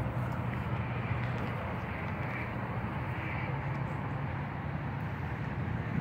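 A steady low mechanical hum under outdoor background noise.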